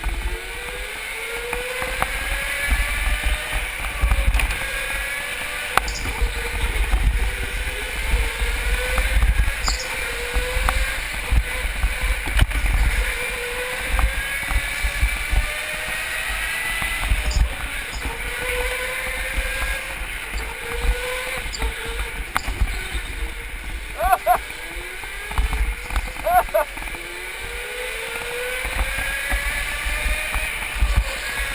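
Onboard sound of a go-kart racing on an indoor track: its motor whine rises again and again as it accelerates out of the corners, every two to three seconds, over a steady low rumble. Two short, higher squeals come near the end.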